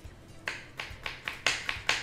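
Kitchen knife chopping a spring onion bulb on a wooden cutting board: quick, regular strikes, about four or five a second, starting about half a second in and growing louder.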